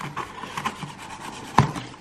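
Scissors cutting through a corrugated cardboard box, the blades scraping and crunching through the card in short strokes, with one sharp snap about a second and a half in.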